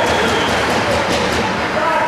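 Spectators' voices calling out in an ice arena, over the noise of play on the ice: skates scraping and sticks clattering.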